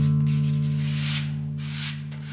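A hand rubbing a cloth over a wooden stool seat in two long strokes, while a guitar chord from background music rings out underneath.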